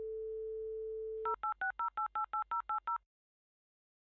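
Telephone dial tone, then a fast run of about a dozen touch-tone keypad beeps dialing a number, stopping about three seconds in.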